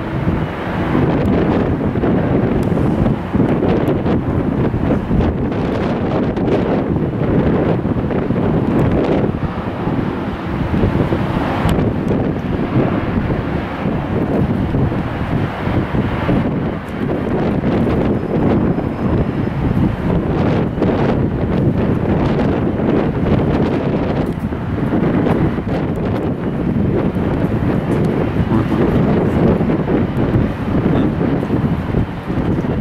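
Wind buffeting the camera microphone: a loud, steady rumbling noise that flutters with the gusts.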